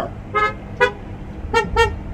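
Car horns tooting from parked cars, four short toots with the last two in quick succession, honked in response to the preacher at a drive-in service.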